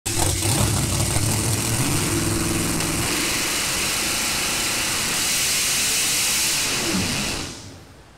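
Supercharged drag-racing car engine running while the car stands still. It has a rough, low note for about three seconds, then turns harsher and hissier, and it fades out near the end.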